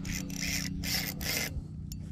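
Spinning reel being cranked by hand close to the microphone, its turning handle and rotor giving a rasping rub in four quick bursts over about a second and a half.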